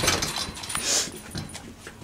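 A dog panting, over shuffling movement noise, with a brief hiss about a second in.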